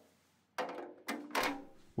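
Fardriver motor controller being lowered into a hole cut in the cart's sheet-metal floor panel: scraping and handling noise with a sharp knock about a second in.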